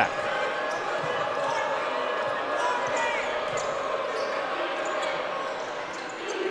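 Steady crowd murmur in a basketball arena during live play, with the ball bouncing on the hardwood court and a few short sneaker squeaks a few seconds in.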